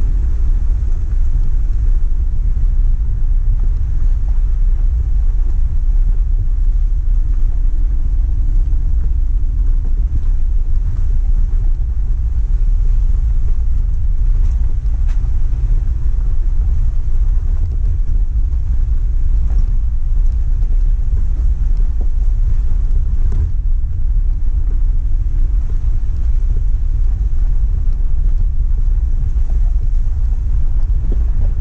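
4x4 driving up a rough gravel road: a steady low rumble of engine and tyres, with wind buffeting the microphone. A faint engine hum surfaces now and then.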